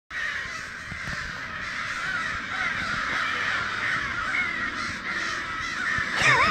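A large flock of crows cawing at once, a dense, unbroken chorus of overlapping caws. The birds are agitated by a crow distress call played at full blast from a car stereo, which may be part of the mix.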